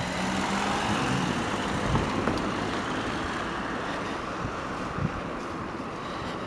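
Steady street traffic noise, easing off slightly after the first couple of seconds, with a soft knock about two seconds in.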